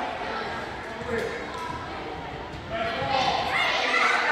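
A basketball bouncing on a hardwood gym floor, with indistinct voices of players and spectators in the echoing gym. The voices grow louder about three seconds in.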